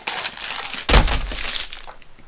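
A shrink-wrapped diamond painting kit tube being handled, its plastic wrap crinkling, with a loud thump about a second in as it is set down on the table.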